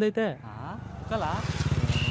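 A motor vehicle engine running with a fast, even pulse, growing louder about a second and a half in.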